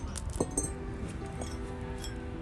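Glazed ceramic pots clinking and knocking against each other as they are picked up and moved, a few sharp clinks with the loudest about half a second in, over steady background music.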